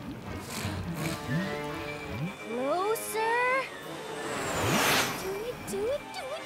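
Cartoon soundtrack of score music and sound effects: a slime monster's rising, whining vocal cries, then a long whoosh that swells to a peak about five seconds in.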